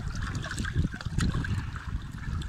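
Hand-held can opener cutting around the lid of a surströmming tin, with irregular small metal clicks and scrapes over low rumbling handling noise.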